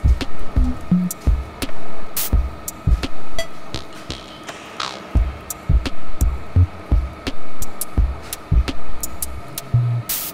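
Background music with a drum beat: repeated low thumps about every half second and sharp percussive clicks.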